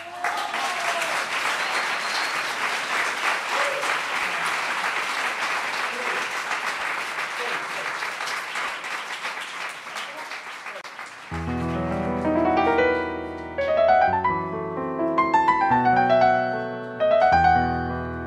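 Audience applauding at the end of a tango piece for about eleven seconds. Then a piano begins the introduction of the next song, with struck notes that ring and fade.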